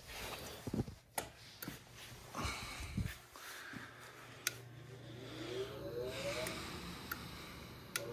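Gas furnace inducer draft motor energised by the control board's self-test: after a few handling clicks and knocks, a low hum starts about three seconds in and a faint whine rises in pitch as the motor spins up.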